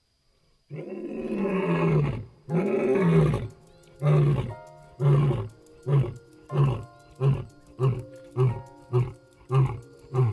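Male white lion roaring: after a brief silence, two long moaning calls, then a series of about ten short grunts roughly one and a half a second, getting shorter and a little quicker towards the end.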